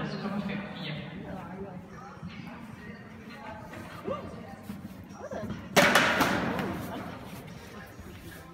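A sudden loud thud about six seconds in, echoing through a large indoor hall, over faint voices.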